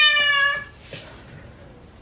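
Tabby cat meowing: one long call, falling slightly in pitch, that ends well under a second in.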